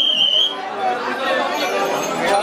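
A short, steady whistle blast lasting about half a second at the start, followed by a crowd of people chattering.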